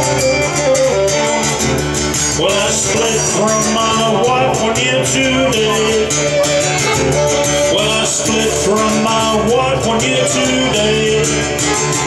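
Live acoustic blues: a fiddle plays sliding melody lines over a strummed acoustic guitar in an instrumental passage, with no singing.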